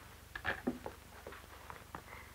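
Faint scattered soft clicks and rustles from fabric and thread being handled, over a steady low hum.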